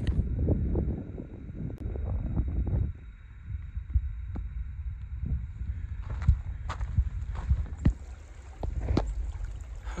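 Footsteps on a dirt trail with a low wind rumble on the microphone, strongest in the first three seconds. From about six seconds in the steps come as sharper, separate crunches.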